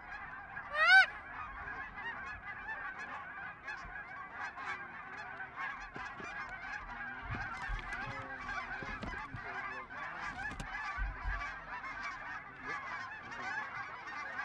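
A large flock of geese honking overhead: a continuous din of many overlapping calls, with one louder, nearer honk about a second in.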